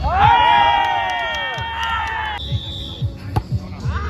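Several voices shout together in one long held cry during a volleyball rally, over background music with a steady beat. A brief high tone follows, then a sharp smack of a hand striking the volleyball about three seconds in.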